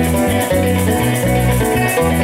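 Llanero string ensemble playing: a bandola llanera picks the melody over strummed cuatros and a low bass line, with maracas shaken in a steady fast rhythm.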